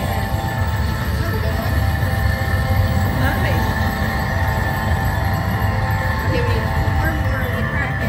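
Slot machine win-celebration music and credit rollup tones playing while a big free-spin win counts up, held steady throughout, over a constant low rumble.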